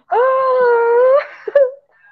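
A woman's voice letting out a drawn-out wail of exasperation, held on one high pitch for about a second and rising slightly at its end. A brief vocal sound follows.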